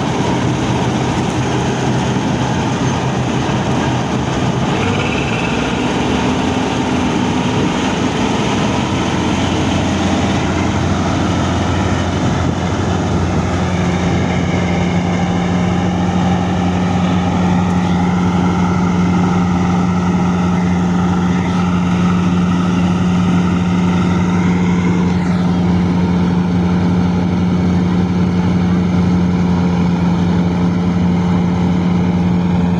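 Combine harvester running while cutting wheat: its diesel engine and threshing machinery give a loud, steady drone. A deeper, stronger hum sets in about halfway through and holds.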